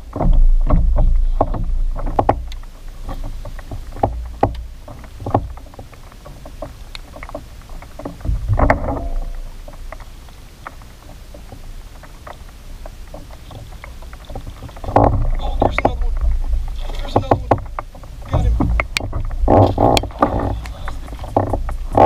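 Handling sounds of fishing from a kayak: a rod cast near the start, then a fishing reel being cranked in spells, with many small clicks and knocks and a low rumble that comes and goes.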